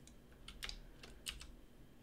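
Faint computer keyboard key presses, a few clicks in two short clusters.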